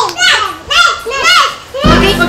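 A young girl's excited high-pitched voice in a string of short, rising-and-falling calls with no clear words. Music comes in just before the end.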